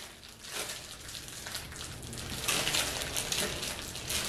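Plastic wrapper of a honey bun crinkling and crackling as the bun is crammed into the mouth and chewed. The crackling grows louder about two and a half seconds in.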